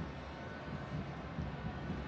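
Stadium crowd noise: a steady hum of many voices in the stands during open play.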